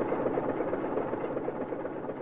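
Car engine running steadily, an audio-drama sound effect standing for a Ford Model T on the road, fading out gradually.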